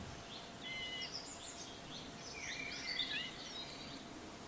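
Small birds chirping over a steady faint hiss, with scattered short calls and a louder, very high falling whistle near the end.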